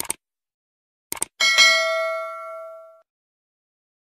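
Subscribe-button animation sound effect: a quick double mouse click, another double click about a second later, then a notification bell ding that rings with several clear tones and fades out by about three seconds in.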